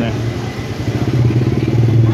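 A motorbike engine running close by, a steady low drone that grows louder towards the end.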